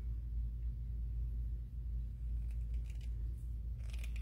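Faint scrapes and light clicks of a small round metal tin being turned and twisted in the hands to work its lid off, over a steady low hum. The clicks come mostly in the second half.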